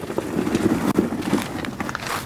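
Loaded garden wagon pulled over gravel, its wheels crunching on the stones in an uneven run of small clicks and grinding.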